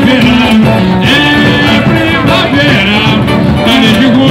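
Loud live carnival samba music played through a stage sound system: a sung melody over a band with a samba percussion section (bateria).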